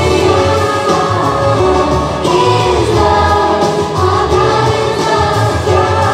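Christian worship song: a choir of voices singing over instrumental accompaniment with a pulsing bass line.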